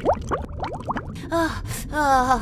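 Cartoon seahorse character panting and gasping for breath, worn out from swimming hard. A quick run of short squeaky sliding sounds comes first, then a voiced gasp with falling pitch.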